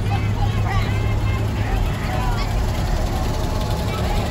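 Steady low rumble of a slow-moving vehicle's engine, with scattered voices of an onlooking crowd over it.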